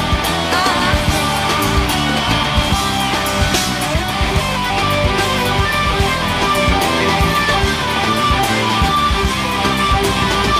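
Live rock band playing an instrumental passage, an electric guitar out front over bass and a steady drum beat.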